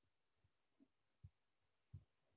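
Near silence: room tone with a few faint, short, low thumps spaced unevenly about half a second apart.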